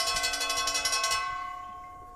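A boxing ring bell struck in a quick roll that stops a little after a second in, its tones then ringing on and fading away.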